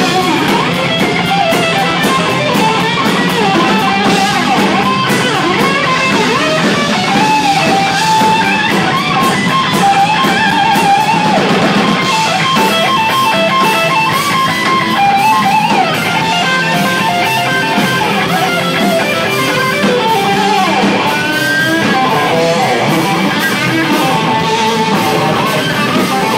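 Hard rock band playing live and loud: electric guitars over bass and drums, with cymbals ringing throughout.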